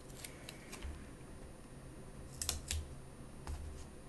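A few short, light clicks and crackles of paper planner stickers being peeled from their sheet and handled.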